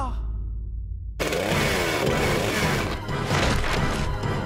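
The echo of a shouted word fades. About a second in, a loud, dense rush of noisy sound effects comes in over music and keeps going.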